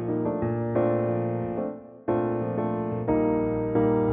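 Piano playing a chord progression over a held B-flat pedal bass, B-flat major 7 moving to E-flat over B-flat, with a new chord struck about once a second and each left to ring and fade.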